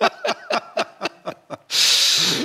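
A man laughing hard in quick, rhythmic bursts of about five a second, ending near the end in a loud, breathy rush of air as he catches his breath.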